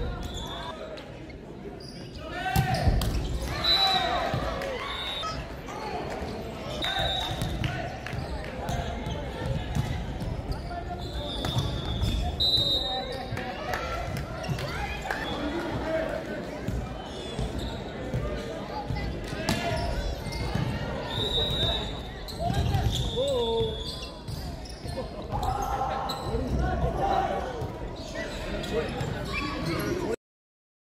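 Sounds of an indoor volleyball match in a large, echoing hall: players' shouts and calls, sharp ball strikes, and short high squeaks of shoes on the court floor.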